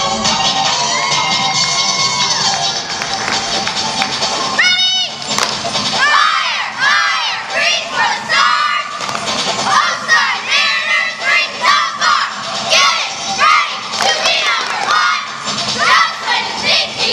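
Cheerleading squad of young girls shouting a chanted cheer in unison, short yelled phrases about one a second, with crowd cheering underneath. Before that the routine music fades out in the first few seconds, and a single high-pitched shout comes about five seconds in.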